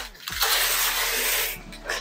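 Brown kraft wrapping paper being ripped off a large cardboard box by hand: one continuous tearing rustle lasting about a second and a half.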